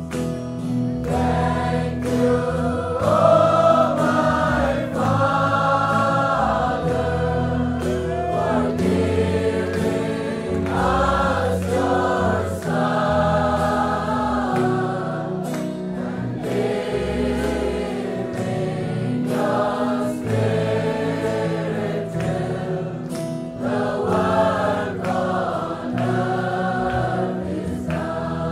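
A choir singing a worship song, with notes held and wavering, over a steady sustained accompaniment.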